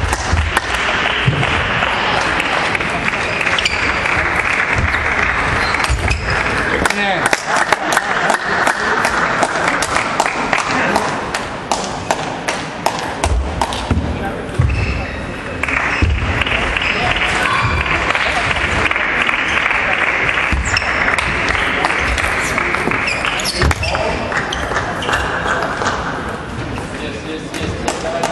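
Table tennis balls clicking sharply and repeatedly off bats and tables, from the near table and others in the hall, over a constant babble of many voices in a large echoing sports hall. There are occasional low thuds among the clicks.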